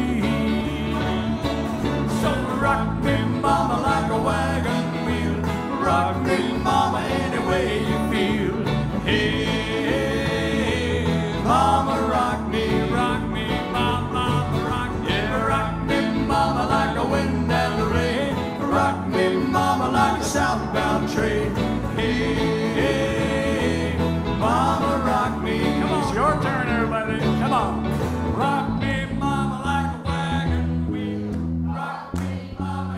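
Live country band playing an instrumental break on banjo, acoustic guitar and electric guitars at a steady tempo, with bent lead-guitar notes standing out a few times.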